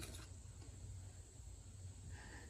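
Near silence: faint room tone with a low steady hum, with no distinct handling sound standing out.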